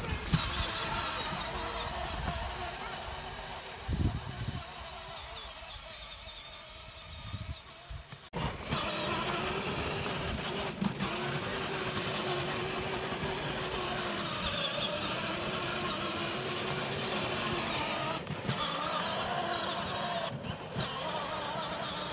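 Battery-powered Power Wheels Jeep's electric drive motors and gearboxes whining steadily as the ride-on toy drives through snow, with a quieter stretch for a few seconds in the first half.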